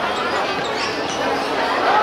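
A football being kicked and bouncing on a hard outdoor court, with players and onlookers shouting and chattering.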